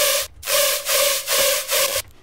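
Heavily distorted hard trap synth patch from Serum playing back: gritty, noisy stabs with a steady buzzing tone in them, pulsing about two to three times a second, cutting off sharply at the end.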